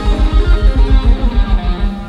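Live reggae band playing an instrumental passage: electric guitar and bass over the drum kit, with a steady, fast-repeating low pulse.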